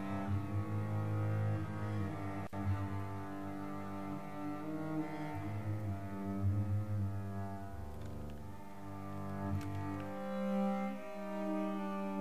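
8Dio Bazantar sampled bowed phrase from the 'Mystical Dark Bowing' patch: a slow line of low bowed notes on the five-string acoustic bass with sympathetic strings, the pitch changing every couple of seconds over a steady ringing resonance.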